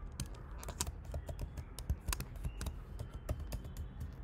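Typing on a computer keyboard: an irregular run of quick key clicks as a password is entered, over a low steady background hum.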